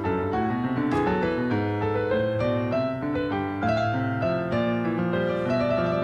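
Solo piano playing a continuous flow of notes and chords, each note struck and then fading.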